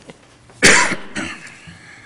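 A person coughing: one sudden loud cough about half a second in, followed by a smaller second cough.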